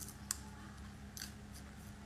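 Small wet mouth clicks as fingers pick at the lips and teeth: one sharp click about a third of a second in, then a few faint ones, over a faint steady hum.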